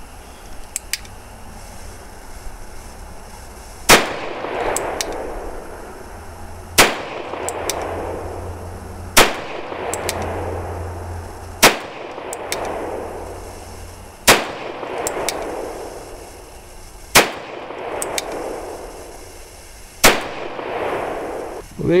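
Russian Nagant M1895 revolver firing 7.62×38mmR rounds: seven single shots, spaced about two and a half to three seconds apart, each followed by a short echo.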